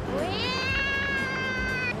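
A woman's high-pitched, drawn-out cry of "wow" (우와), rising at first and then held steady for about a second and a half.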